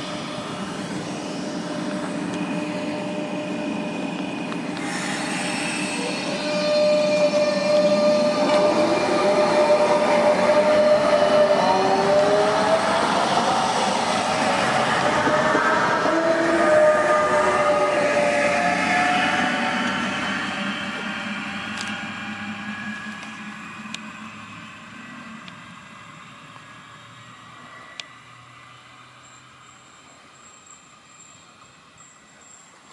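Renfe series 447 electric multiple unit, two sets coupled, pulling away: a whine of several tones rises in pitch as it gathers speed, loudest a few seconds in, then fades as the train draws off into the distance. A few sharp clicks come near the end.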